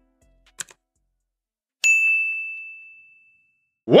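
Subscribe-button animation sound effects: two quick mouse clicks, then a single bright notification-bell ding about two seconds in that rings out and fades over about a second and a half.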